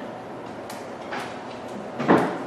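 Playing cards being dealt one at a time, two soft short flicks a little under a second in and again about half a second later, over faint room hiss.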